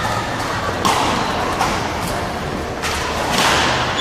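Badminton rackets hitting a shuttlecock in a doubles rally: about four sharp hits, roughly a second apart.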